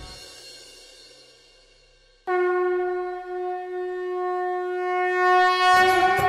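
A conch shell (shankh) is blown in one long, steady note that starts abruptly about two seconds in. It is the traditional call that opens a Hindu puja. Before it, the preceding background music fades away, and devotional music comes in just before the end.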